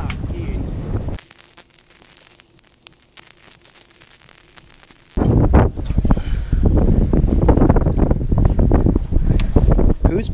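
Wind rumbling and buffeting on an action camera's microphone over open water. It drops to a low hush about a second in, then comes back loudly and in gusts about five seconds in.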